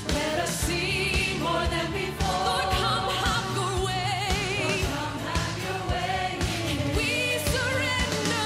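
Christian worship pop song: a lead vocal sings held notes with vibrato over a steady drum beat of about two strokes a second and a band accompaniment.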